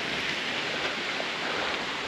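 Steady outdoor background rush, an even noise with no distinct events.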